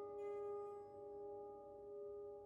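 Prepared grand piano, its strings laden with objects, played softly: several notes ring on together as steady tones that slowly fade, with a brief bright shimmer at the start.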